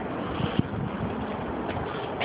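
Steady outdoor background noise of street traffic, mixed with wind buffeting the microphone, and a single light click.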